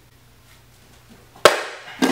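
A single sharp crack about one and a half seconds in: a board snapping under a spinning hook kick.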